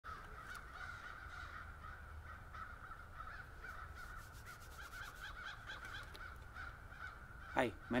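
Faint, continuous calls of distant birds over a low background rumble.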